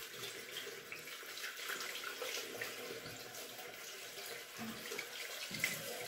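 Bathroom tap running steadily into a sink while cream-covered hands are washed under it.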